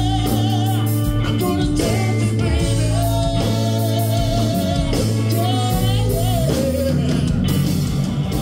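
Live blues-funk band playing: electric guitar, electric bass and drum kit, with singing in long, wavering held notes over a steady bass line.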